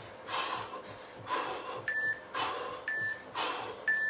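Hard, heavy breaths about once a second from a man sprinting on the spot with high knees. In the second half, three short high beeps a second apart from an interval timer counting down the last seconds of the round.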